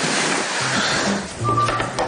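Thick duvet rustling as a man pulls it over himself and settles into bed. The noise fades about a second in, and a few short notes of background music follow near the end.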